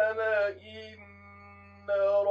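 A man's voice reciting the Quran in a melodic, drawn-out chant. A gliding phrase is followed by a softer, steadily held note from about half a second in until near the end, when the voice swells again. A steady low hum sits under the voice.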